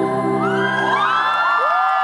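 Live acoustic guitar and vocal music holding sustained notes, while audience members whoop several times from about half a second in.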